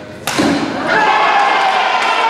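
A single sharp hit about a quarter second in, a badminton racket smashing the shuttlecock, followed at once by loud sustained shouting and cheering voices as the rally ends.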